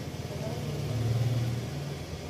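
Low background hum that swells to a peak about a second in and then eases off.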